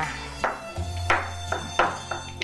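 Background instrumental music with held notes, with a few sharp struck sounds about half a second in, a second in and near the end.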